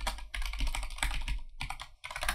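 Computer keyboard typing: a quick run of keystrokes for about a second and a half, then a couple of single presses near the end, as a password is typed at a sudo prompt.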